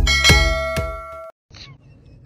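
Electronic intro music with a steady beat, topped by a bright bell ding like a subscribe-button sound effect; both cut off abruptly a little over a second in, leaving faint background noise.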